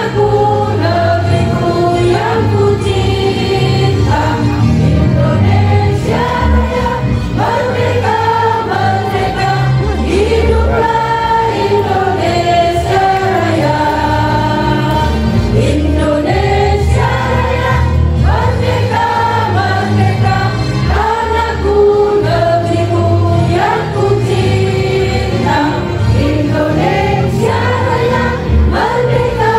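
Women's choir singing a song together into microphones, amplified over a sound system, with low bass notes held beneath the melody.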